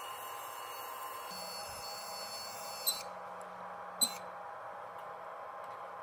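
A faint steady hum with a few held tones, broken by two light taps about three and four seconds in.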